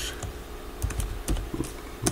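Computer keyboard typing: a few separate keystrokes as code is entered.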